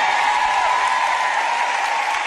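Audience applauding, a steady wash of clapping with a faint steady tone running through it.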